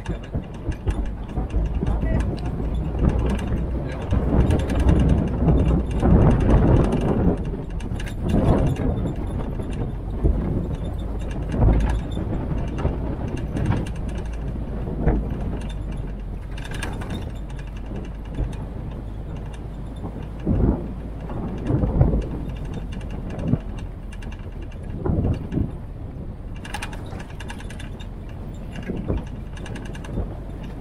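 Open military Jeep driving on a rough forest road: its engine and road noise run steadily, while the body and fittings rattle and knock over the bumps.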